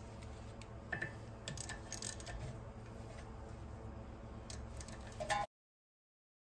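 Scattered light clicks of a hand tool turning the rust-bound T30 Torx screw that holds a rear brake rotor, working it loose. Near the end the sound cuts off to dead silence.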